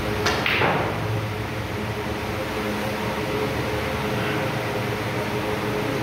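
Snooker cue tip striking the cue ball: one sharp click shortly after the start, followed by a brief fading rush, over a steady background hum.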